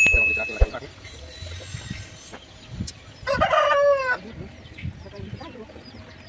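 A rooster crows once, about three seconds in, a single call lasting about a second.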